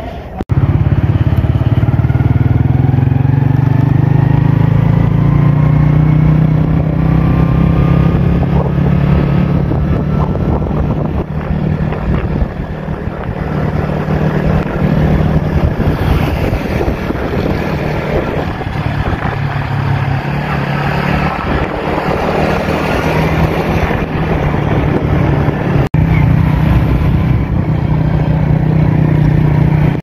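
Motorcycle engine running under way, heard from the rider's seat, its pitch climbing over the first few seconds as it picks up speed. The sound breaks off for a moment near the end.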